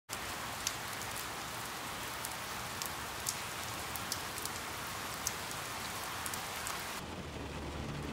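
Steady rainstorm: an even hiss of rain with scattered sharp drop taps. About seven seconds in, the high hiss falls away and the rain sounds duller.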